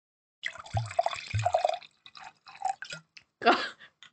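A person gulping down a drink close to the microphone, a little glug glug, with two deep gulps about a second in, then a few smaller liquid sounds and a short louder noise near the end.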